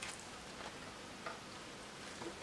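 Faint steady background noise with a few soft ticks.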